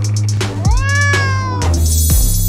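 A domestic cat meows once: a drawn-out call that rises and then falls slightly in pitch. Electronic background music with a steady beat plays under it.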